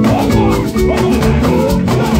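Live band music in a steady upbeat rhythm, with shakers rattling over drums, guitar and keyboard.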